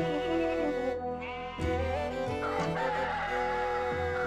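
A rooster crowing and hens clucking over steady background music.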